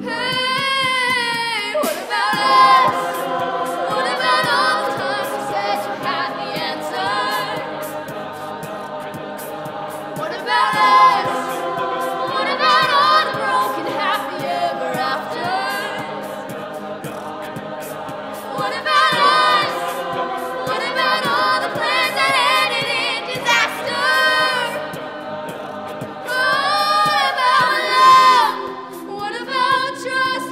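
A cappella choir singing sustained chords, with a female lead voice gliding over them at the start and again near the end, and a vocal percussionist's beat ticking along underneath.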